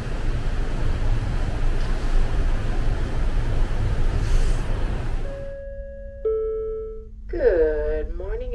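Wind rushing over the microphone on an open ship deck, with a deep rumble underneath, which cuts off about five seconds in. Then a few held, chime-like tones sound one after another, and a voice begins near the end.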